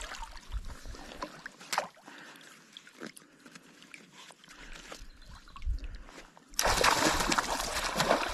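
A hooked fish splashing at the surface of a river beside a wading angler, loud and sudden about two thirds of the way in and continuing; before that, quieter lapping water with a few clicks.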